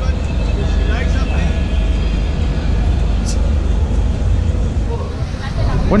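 Open-air market ambience: a steady low rumble with faint, distant voices in the background.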